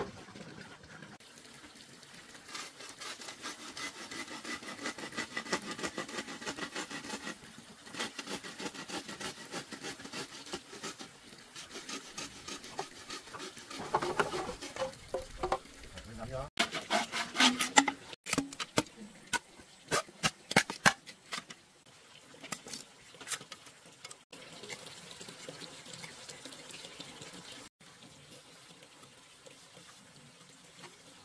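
Wood fire crackling in an open hearth with a steady patter of small pops, then a run of sharp hollow knocks and clacks from bamboo tubes being handled and set down.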